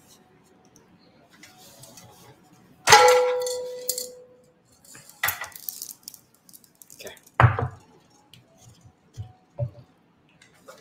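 A sharp metallic clang about three seconds in, ringing on in clear tones for about a second, as a butane gas canister and a portable gas stove are handled; a shorter, duller clatter follows about two seconds later.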